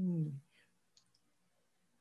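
A man's thoughtful 'hmm', falling in pitch, trails off in the first half second. A couple of faint clicks follow about a second in, then quiet room tone.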